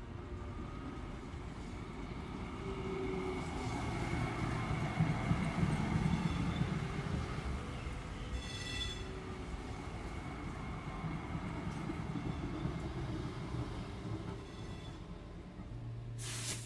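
City trams running: a steady low rumble of wheels on rails that swells in the middle, with faint squealing tones. There is one brief high ringing sound about halfway through.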